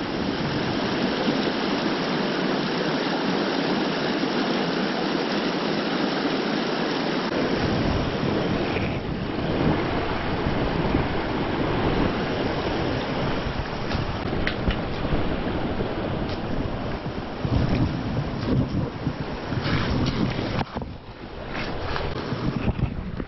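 Mountain trout creek rushing steadily over rocks in a shallow riffle. A low rumble of wind on the microphone joins about seven seconds in.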